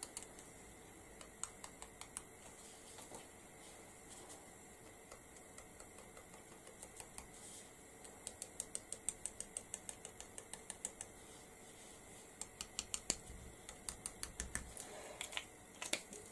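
Faint light clicks of a pen tip dabbing dots onto card, coming in quick irregular runs of several taps a second, busiest from about six seconds in and again near the end.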